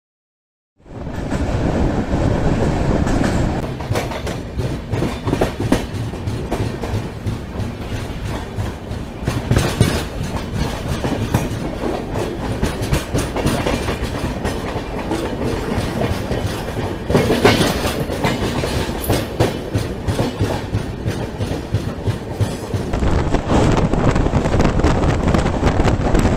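Running noise of a moving express passenger train heard from a coach window: steady rumble with the wheels clicking and clattering over rail joints and points at speed. The sound starts abruptly after a second of silence.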